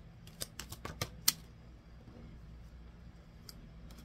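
Tarot cards being handled: a handful of sharp card snaps and clicks in the first second and a half, then fainter handling.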